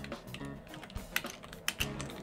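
Computer keyboard typing: a run of irregular key clicks as a word is typed out.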